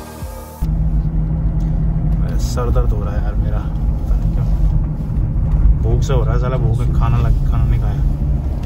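Music cuts off about half a second in, giving way to the steady low rumble of a Ford Endeavour SUV's engine and tyres on the road, heard from inside the cabin. Low voices talk over it twice.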